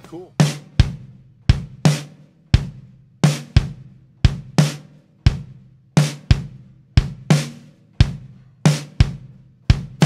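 Drum kit playing alone in a rock song's intro: a steady, evenly spaced beat of bass drum and snare hits, about two a second.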